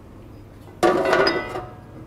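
A steel clamping washer clinking against the arbor and diamond blade of a brick-cutting saw as it is fitted by hand: one sharp metallic clatter with a brief ring a little under a second in.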